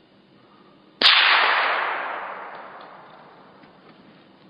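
A single gunshot from a long gun about a second in, its report echoing and fading away over about two seconds.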